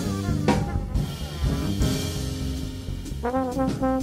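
Small jazz band playing: trumpet and trombone lines over drum kit with cymbals. A new horn phrase with bending notes comes in about three seconds in.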